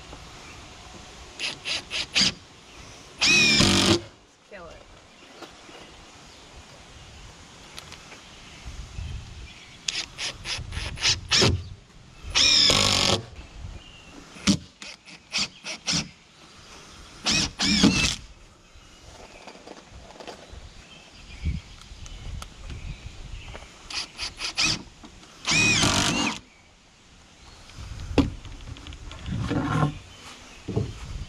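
Ryobi cordless drill/driver driving screws into wooden boards: four short runs of the motor, each under a second, most of them started with a few quick stop-start pulses.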